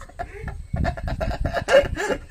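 People laughing in a quick run of short, choppy bursts.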